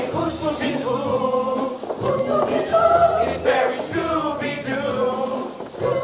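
Mixed-voice show choir singing in harmony, with several held notes sounding together and shifting every second or so.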